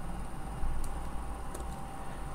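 Quiet room tone with a low steady hum, and a few faint clicks from computer use, one a little under a second in and another past the middle.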